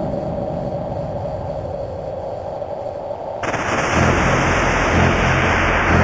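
Techno track playing on a radio broadcast, opening with a muffled, rumbling noise. About three and a half seconds in, a bright rush of noise cuts in and a heavy, pulsing bass starts.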